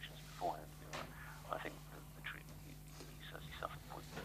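Quiet, indistinct speech, with a steady low hum underneath.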